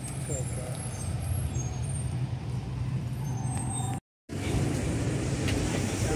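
Street traffic: a minivan's engine running with a steady low hum as it drives slowly past. The sound cuts out completely for a moment about four seconds in.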